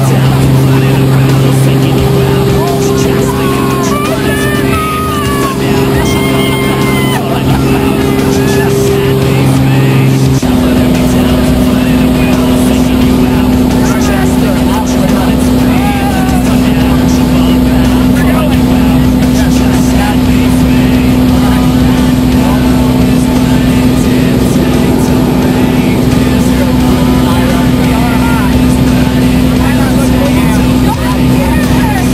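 Small high-wing jump plane's engine and propeller droning steadily, heard from inside the cabin as the plane climbs.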